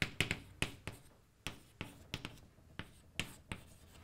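Chalk writing on a blackboard: a quick, uneven run of sharp taps and short scratching strokes as letters and a fraction line are chalked up.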